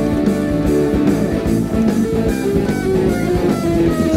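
Rock band playing: an electric guitar melody over bass guitar and a steady drum beat, with no vocals.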